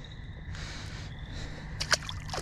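A low, steady open-air background, then, near the end, a short sharp splash as a small released fish hits the water beside the boat.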